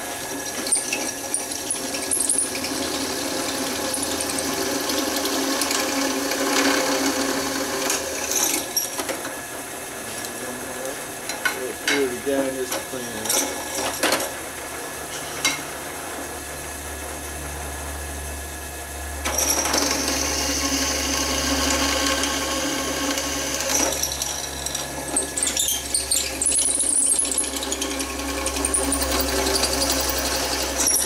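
Benchtop drill press running and drilling through welded metal, its motor humming steadily while the bit cuts. The cutting is louder at first, eases off for several seconds in the middle and picks up again about two-thirds of the way through, with a few sharp clicks along the way.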